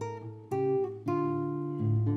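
Classical nylon-string guitar fingerpicked, with new chords plucked about half a second and a second in and left to ring.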